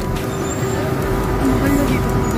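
Steady background din of a busy indoor public space, with a low steady hum and faint distant voices.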